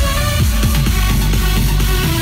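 Big-room electro house played loud over a festival PA system from a DJ's decks. It has heavy bass and a steady kick-drum beat of about two thumps a second, with bright synth notes on top.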